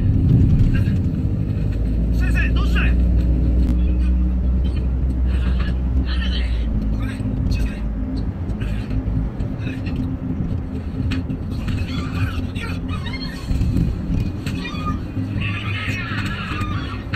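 A car's engine droning low, with road noise, heard inside the moving car's cabin. The deepest part of the drone drops away about seven seconds in. Short higher-pitched bursts sound over it throughout.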